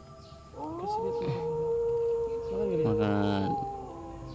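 A drawn-out wailing cry rises about half a second in and holds one pitch for about two seconds. A second, shorter cry falls away near the end. A steady low drone runs underneath.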